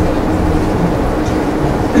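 Steady low rumble and hum of room background noise, with a faint constant tone and nothing sudden.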